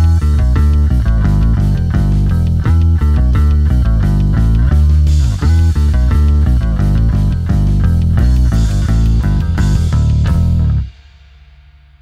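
Electric bass played fingerstyle through a Boss OC5 octave pedal, a lower octave blended in under a busy riff of quick notes with a heavy, deep low end. The riff stops suddenly about eleven seconds in, leaving only a faint amp hum.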